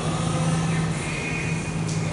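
A steady low hum with background noise, with no words spoken.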